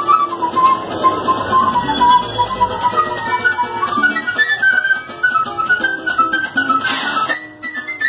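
Quena (Andean notched flute) playing a fast, ornamented melody over strummed guitar chords. The line climbs higher in the middle. Near the end a short breathy rush is heard and the playing stops.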